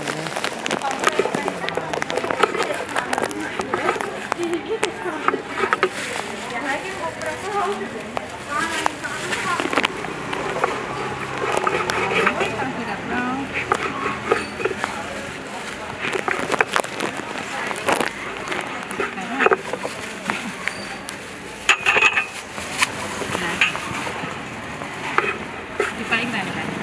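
Sharp knocks of a long serrated knife striking a wooden chopping block as mango is cut into cubes, coming at irregular intervals with the loudest knocks near the end. Voices chatter steadily underneath.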